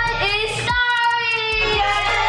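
A young child singing in a high voice, with short notes and then one long held note in the middle.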